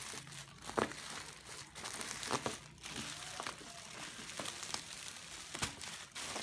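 Thin plastic bag and plastic pillow wrapping crinkling and rustling as they are handled and pulled apart, with irregular sharp crackles about once a second.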